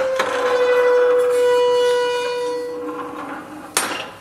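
Electric kiln lid swinging open on its spring-loaded hinge: a steady squeal that fades over about three seconds, then a sharp clack as the lid comes to rest.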